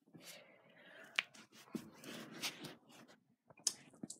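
Faint rustling and a few small clicks from someone moving about a carpeted room with a handheld phone, one sharper click a little over a second in.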